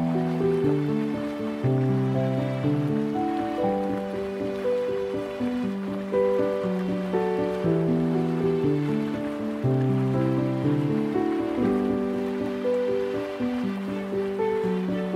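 Slow, gentle solo piano music: low held bass notes under a simple melody of struck notes that ring and fade. A faint steady wash of flowing river water lies beneath it.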